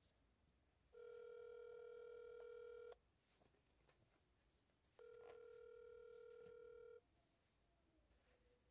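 Phone's ringback tone for an outgoing video call, heard faintly: two steady beeps, each about two seconds long with a two-second gap between them, while the call waits to be answered.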